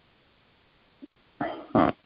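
Two short voiced calls in quick succession near the end, over faint hiss.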